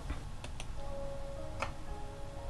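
Two quick clicks about half a second in as playback is started, then faint music with long held notes begins playing from a laptop's speakers, with one more click part-way through.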